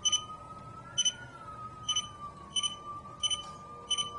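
A phone app's proximity beeps: short, high double beeps repeating a little faster than once a second and quickening slightly. The beeps are audio feedback of Bluetooth signal strength, speeding up as the phone nears the Bluetooth device. A faint steady tone wavers underneath.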